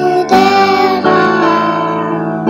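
A young girl singing a solo line of a song into a microphone, over instrumental accompaniment, with held sung notes and new notes entering about a third of a second and a second in.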